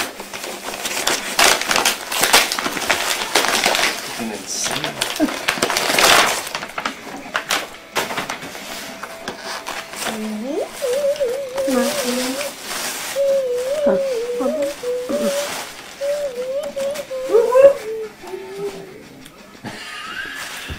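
Paper gift bag and tissue paper rustling and crinkling loudly as a gift is pulled out, for the first six seconds or so. Later a wavering, voice-like pitched sound comes and goes for several seconds.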